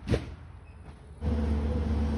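A single thump just after the start, then from a little past halfway a steady low machine drone with a constant hum: the insulation-removal vacuum running, its hose pulling old insulation out of the attic.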